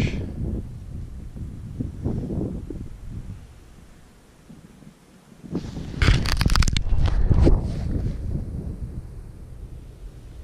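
Wind buffeting the microphone on open lake ice, with a loud burst of rustling and scraping from clothing or gear handling for a second or two from about six seconds in.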